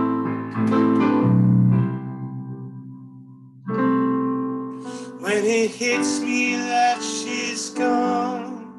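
Solo live song: piano chords ringing out and fading, a new chord struck about four seconds in, then a voice begins singing about five seconds in.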